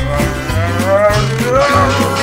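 A drawn-out, wavering vocal call, moo-like, rising slowly in pitch over the two seconds, over cartoon background music with a stepping bass line.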